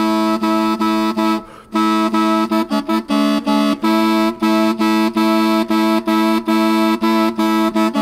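Aulos, the ancient Greek double-reed double pipe (a replica of the Louvre Aulos), playing a melody in short, separated notes over a steady low note. The playing stops briefly about one and a half seconds in, and there is a quick run of notes around three seconds.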